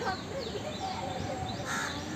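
Birds calling in the background, with one short harsh call near the end and faint high chirps.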